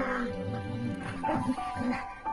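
Two dogs play-fighting, with short dog vocalisations over steady background music.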